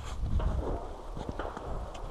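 Low rumble of wind buffeting the microphone, strongest in the first half, with a few faint clicks around the middle.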